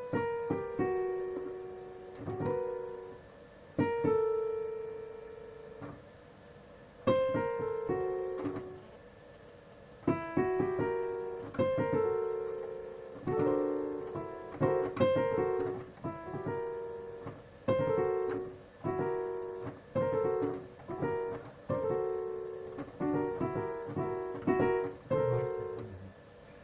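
Digital piano played in short phrases with pauses between them for the first several seconds, then a denser, continuous run of melody and chords from about ten seconds in.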